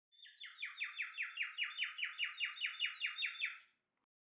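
A bird calling in a rapid trill of about twenty short down-slurred chirps, about six a second. It swells over the first second and stops shortly before the end.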